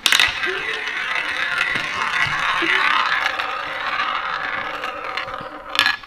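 Small toy roulette wheel spinning, its ball rolling round the track with a steady rattling whirr, ending in a short clatter near the end as the ball drops into a pocket.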